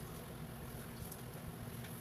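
Faint steady hiss and low rumble of a covered pot of soup boiling on a stove burner.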